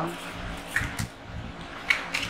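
A few light clicks and soft knocks of objects being handled on a hard tabletop.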